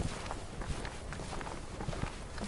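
Footsteps on a wooden boardwalk, with a steady rushing noise behind them.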